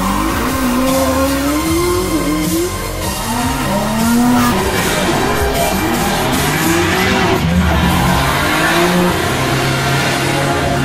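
Sports-car engines revving in repeated rising and falling sweeps, mixed with background music.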